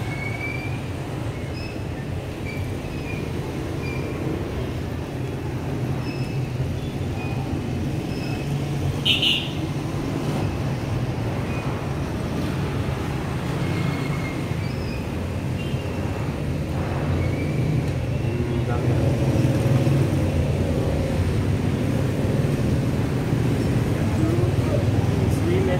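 Steady low background rumble, growing a little louder toward the end, with a brief sharp sound about nine seconds in.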